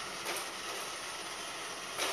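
A DTMF-controlled iRobot Roomba's drive motors running as the robot turns right, a steady mechanical noise.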